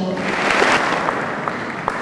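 Audience applauding, the clapping starting just after the award is read out, swelling quickly and then slowly fading.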